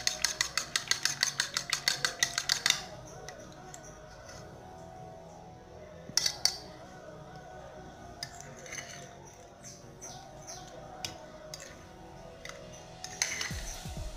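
Eggs being beaten by hand in a bowl: a utensil clinking rapidly against the bowl, about six strokes a second, stopping about three seconds in. Soft background music follows, with a few single clinks of the utensil or bowl.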